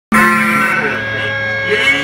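Live punk rock band playing loudly through a venue PA, electric guitars holding a sustained, ringing chord that cuts in abruptly at the start.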